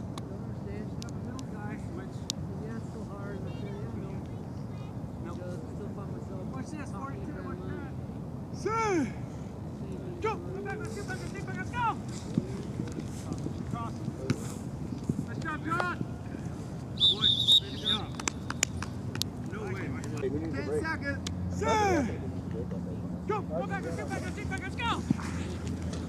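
Scattered shouts and calls of players across an outdoor playing field over steady background noise, with a short shrill whistle about two-thirds of the way through and a steady low hum near the end.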